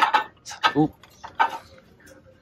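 An oval pottery bowl clinking against the glass plate beneath it as it is lifted off: a few light, short clinks.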